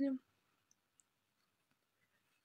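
A woman's voice finishing a word, then near silence with two faint, brief clicks.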